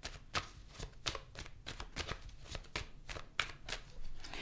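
A tarot deck being overhand-shuffled by hand: a quiet, even run of short card slaps and flicks, about four a second.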